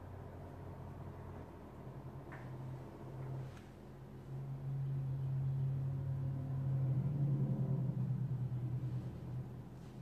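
A low, steady mechanical hum that swells in level about halfway through and eases off near the end, with a couple of faint clicks before it.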